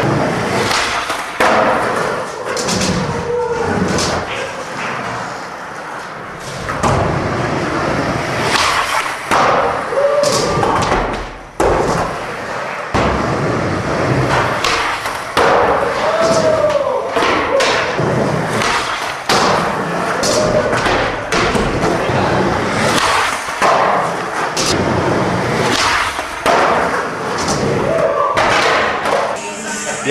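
Skateboards rolling on plywood ramps and a wooden stair set, with frequent sharp clacks and thuds of boards popping and landing throughout.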